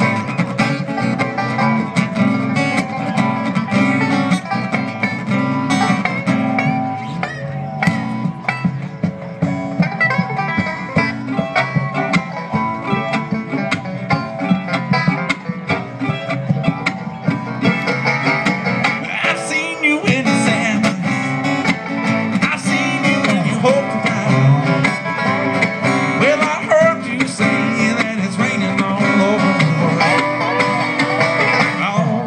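A bluegrass band playing live, acoustic guitar and upright bass to the fore among other plucked strings.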